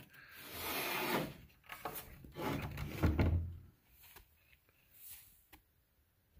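Maple boards being handled: wood sliding and rubbing against wood in two scrapes within the first four seconds, the second with a low knock, then a few faint taps.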